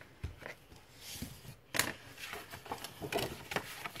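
A sheet of scrapbooking paper being handled and folded: a string of rustles and short taps, with a sharp crackle of the paper a little under two seconds in.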